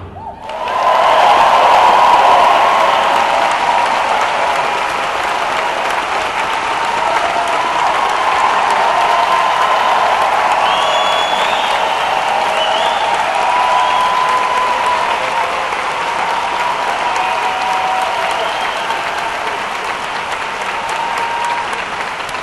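A large audience applauding steadily, breaking out about a second in, with scattered cheers and whoops rising above the clapping.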